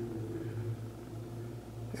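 A steady low hum, the room tone of a small room, with a faint higher tone that fades out about halfway through.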